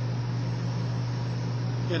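A steady low hum with an even hiss over it, unchanging throughout. A man's voice begins a word at the very end.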